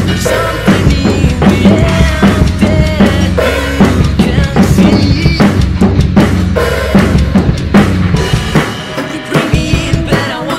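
Acoustic drum kit played fast along to a band backing track: bass drum, snare and cymbal hits over the song's guitars and other instruments. The bass drum thins out near the end.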